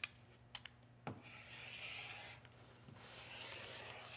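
Rotary cutter rolling through silk charmeuse lining on a cutting mat: two faint stretches of soft rasping cut, after a few light clicks in the first second.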